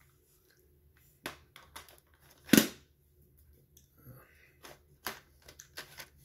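Plastic cassette cases being handled, with a series of small clicks and knocks and one sharper knock about two and a half seconds in.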